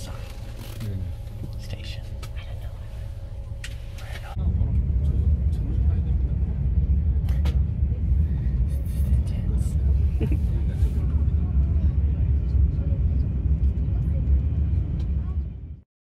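Steady low rumble of a moving passenger train heard from inside the carriage, much louder than the quieter road hum inside a van before it. The rumble cuts off abruptly near the end.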